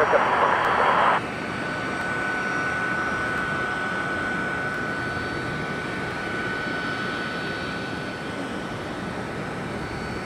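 A short burst of radio static opens, cutting off about a second in. Then jet airliner engines run steadily at taxi power: an even rumbling hiss with a thin, steady high whine.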